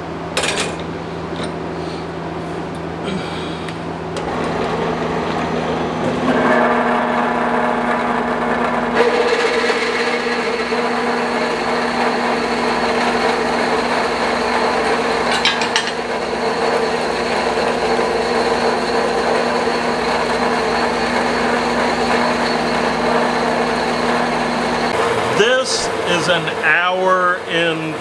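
Klutch 4x6 horizontal metal-cutting bandsaw running, its blade cutting through a vise-clamped stack of steel plate scales. The steady whine of the cut, with several tones, sets in about six seconds in, after a low hum and a few clicks as the stack is clamped.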